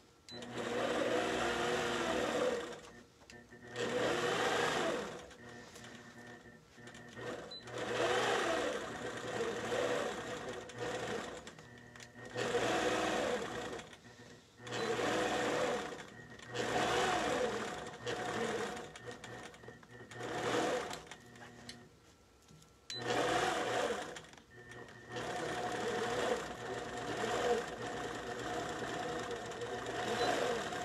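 APQS Millie longarm quilting machine stitching through the fabric leader in a series of short runs of a second or two each, with brief pauses between. Its motor pitch rises and falls within each run as the machine is moved, and it stitches more steadily near the end.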